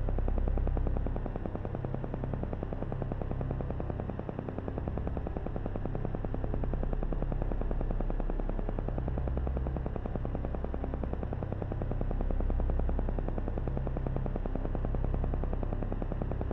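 Meditation background track: a steady, rapid train of pulses, many a second, over a low hum that slowly swells and fades.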